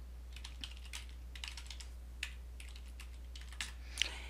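Typing on a computer keyboard: an irregular run of light key clicks as a username and password are entered, over a faint steady low hum.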